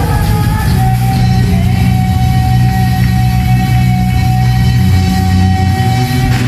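Punk band playing live and loud: guitar, bass and drums with a female singer, and one high note held steadily from about a second in.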